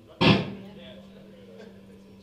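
A single loud, sharp hit about a quarter second in that dies away quickly, followed by a steady low hum.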